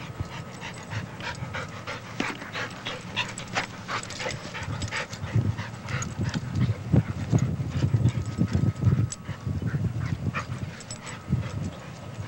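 Two dogs panting and scuffling as they play-wrestle, with short rough bursts. The sounds grow louder and denser from about five seconds in until about nine seconds in.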